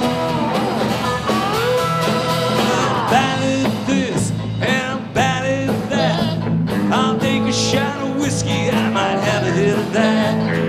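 Live rock band playing a song: electric slide guitar gliding between notes over bass, drums and acoustic guitar, with a man singing.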